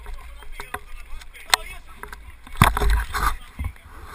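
Wind rumbling on a body-worn camera's microphone, with scattered knocks and handling thumps, the loudest a little past halfway; faint, indistinct voices underneath.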